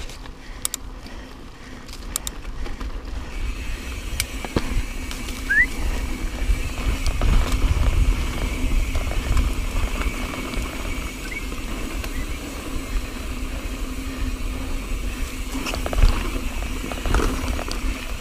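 Mountain bike rolling along a dirt singletrack trail: tyre noise and a steady wind rumble on the camera microphone, with sharp knocks and rattles from the bike over bumps, one about four seconds in and a louder one near the end.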